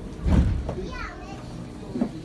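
Brief voices, a child's among them, over a steady low rumble, with a loud low burst about a third of a second in.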